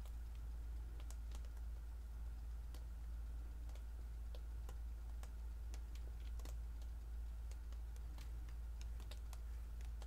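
A steady low hum with faint, irregular clicks and ticks, a few a second, from gloved hands gripping and tilting a paint-covered canvas.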